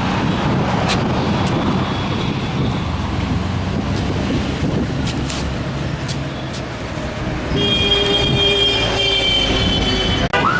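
Steady road traffic rumble from passing vehicles. Near the end a long, steady high-pitched tone joins the traffic noise.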